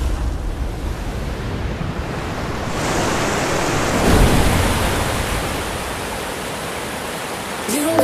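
A steady rushing noise, like surf or wind, with no music; it swells about three seconds in and slowly eases off again.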